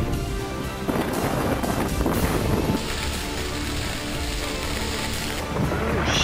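Background music over a steady rush of storm wind with a low rumble. A brighter hiss joins about three seconds in and drops away near the end.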